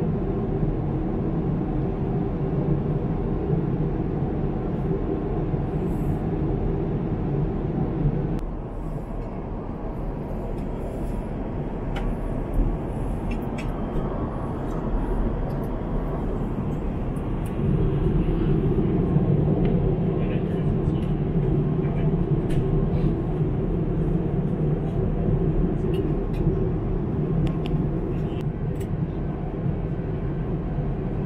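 Steady airliner cabin noise in flight inside an Airbus A350: the low rush of airflow and engines. It drops a little quieter for several seconds about a third of the way in, then comes back up.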